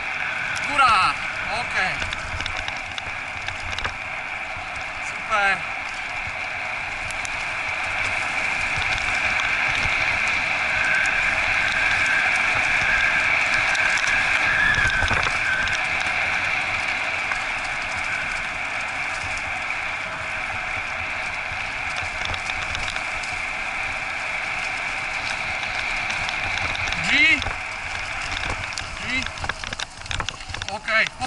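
Wheels of a dryland dog-training cart pulled by a husky team rolling fast over a dirt forest trail: a steady high-pitched rolling hiss and rattle, a little louder through the middle.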